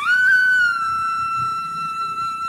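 Flute music: one long held note, rising slightly at its start and then steady.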